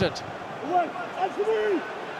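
Footballers shouting on the pitch, a few long raised calls as if appealing, heard with a sharp kick or thud of the ball at the very start.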